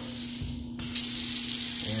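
Bathroom sink faucet running, a stream of water into a basin; the flow cuts out about half a second in, then the water comes back on and runs steadily. A steady low hum sits underneath.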